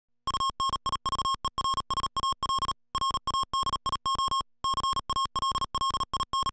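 Morse code sent as a steady, high-pitched beep, keyed on and off in quick dots and dashes with short pauses between groups.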